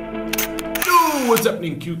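Intro music of sustained synth tones with a sharp camera-shutter click, then, a little under a second in, the music cuts off into a noisy swish and a man's voice sliding down in pitch.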